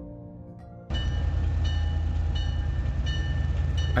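Soft background music, cut off suddenly about a second in by a diesel locomotive approaching. Its engine gives a steady, heavy low rumble with a high whine over it.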